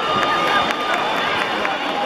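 Several voices shouting and calling out over the foot stomps of a step routine.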